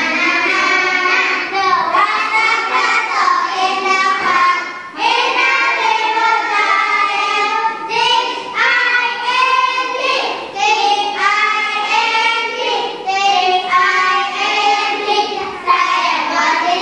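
Children singing a song in short phrases, with brief breaks between the lines.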